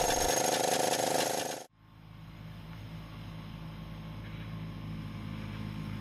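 The 1931 Maikäfer prototype's 200 cc single-cylinder two-stroke engine running, until the sound cuts off abruptly about a second and a half in. After a brief silence, a faint steady low hum slowly grows louder.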